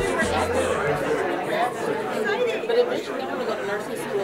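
Several people chatting indistinctly in a large room, with voices overlapping. Background music underneath stops about a second in.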